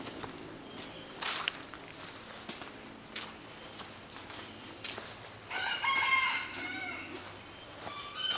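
A rooster crows once, about five and a half seconds in, for about a second and a half, over scattered footsteps on wet leaf litter.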